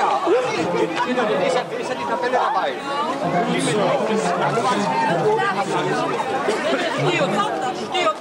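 Crowd chatter: many people talking at once, their voices overlapping without a break.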